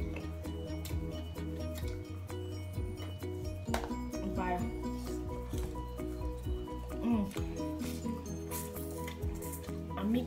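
Background music with a steady bass line and repeating notes, with a few brief voice-like sounds over it.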